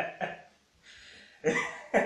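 A man laughing in quick rhythmic bursts that die away, a short breathy hiss about a second in, then a loud burst of laughter that picks up again near the end.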